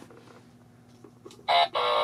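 A loud, high-pitched call held at one steady pitch for over half a second, starting about a second and a half in after a quiet stretch.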